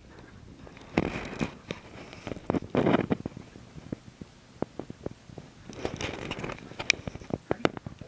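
A Groenendael (Belgian Sheepdog) scrambling and leaping after a laser dot: short rushes of paws scuffling on carpet, then a run of sharp clicks and knocks from its claws against a door and the floor.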